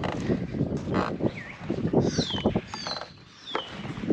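A bird calling several times, each call a short high whistle falling in pitch, over close rustling and clicking of a motorcycle helmet being handled and lifted.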